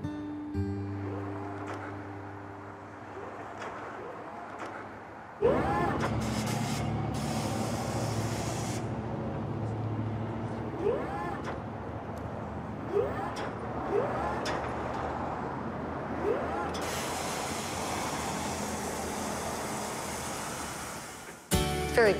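The last held chord of a guitar song fades out. About five seconds in, a steady outdoor ambience cuts in, with wind or traffic noise and a handful of short rising calls. It runs on until just before the end.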